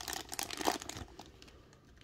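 Thin clear plastic bag crinkling as it is handled and pulled open, a dense rustle for about the first second that then fades to a few faint ticks.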